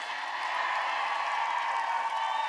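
Large crowd cheering and applauding, a steady wash of many voices and clapping that holds level.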